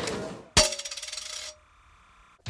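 A fading mix of several TV shows' end-credits audio, then a single sharp metallic clang about half a second in that rings on and dies away over about a second, followed by near silence.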